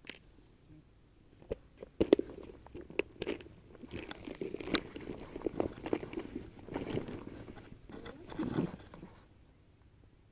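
Close handling noise from fishing tackle: a sharp click, then irregular clicking, scraping and rustling of a plastic tackle box and gear that stops shortly before the end.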